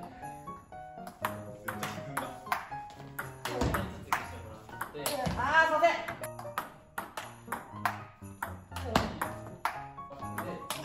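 Table tennis ball clicking off rubber rackets and the table in a rally of topspin drives against backspin chops, a sharp tick about every half second. Background music runs under it, and a voice is heard briefly in the middle.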